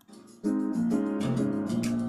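A recorded pop ballad's instrumental accompaniment playing back. A short near-silent gap, then a new chord comes in about half a second in, with a steady pulse.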